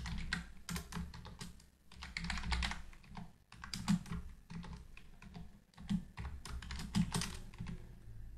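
Typing on a computer keyboard: quick, irregular runs of keystrokes broken by short pauses.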